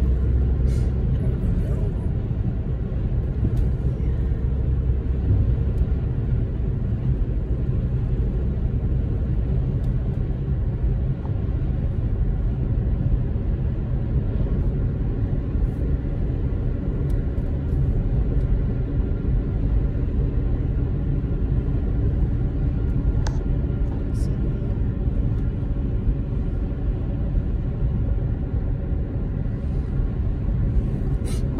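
Steady low rumble of road and engine noise heard inside a moving car's cabin, with a few faint clicks.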